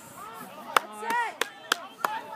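Distant shouting voices across a playing field, broken by three sharp cracks: one a little under a second in, then two close together near the end.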